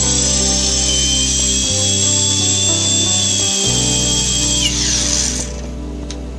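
Quadcopter's brushless motors spinning together on the bench with a high electric whine, the pitch creeping up slightly as the throttle is held. About five seconds in the whine falls away in pitch as the throttle is cut, over background music.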